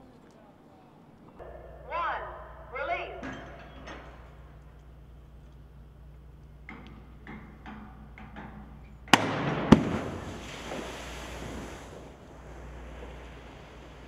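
The 18,000-pound Orion capsule test article dropping into a water basin. About nine seconds in there are two sharp bangs about half a second apart. The rushing splash of water follows and fades over about three seconds.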